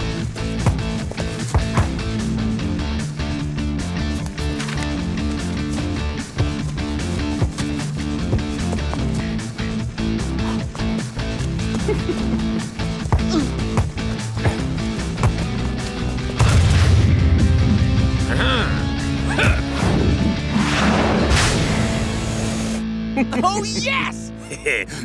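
Background music with a bass line and driving beat, with short sharp hits over it. About two-thirds of the way through, a louder low rumble swells for a second or two.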